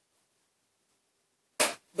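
Near silence for about a second and a half, then one brief, sharp noise just before a voice starts speaking.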